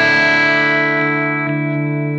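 Electric guitar, a Les Paul-style single-cut, played through a pedalboard and holding one sustained chord that rings out steadily, its brighter overtones slowly fading.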